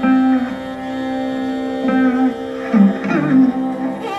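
Chitraveena, a fretless veena played with a slide, playing a slow Carnatic melody with held notes that glide between pitches, accompanied by violin.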